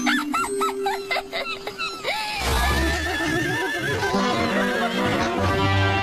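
Cartoon soundtrack: a quick run of short, rising, squeaky cartoon sounds, then about two seconds in a music cue with a steady bass line starts and carries on.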